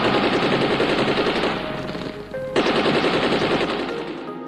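Rapid automatic machine-gun fire in long bursts, with a brief break a little past halfway.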